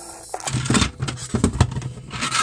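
Cordless drill driving a screw into a 3D-printed plastic part. The motor starts about half a second in and runs in short uneven spurts.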